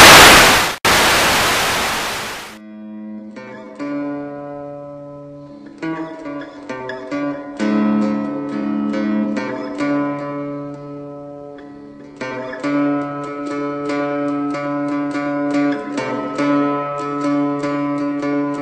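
Loud static hiss for the first two and a half seconds, then a three-string cigar box guitar starts up: picked notes ringing over a repeating low figure.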